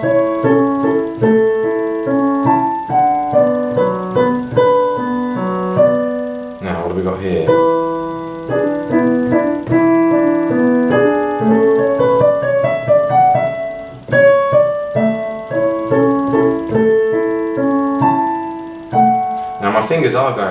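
Roland digital piano played slowly, hands together, with a right-hand melody over an Alberti-bass left hand. It is a first read-through with stumbles: the player went wrong in the first phrase.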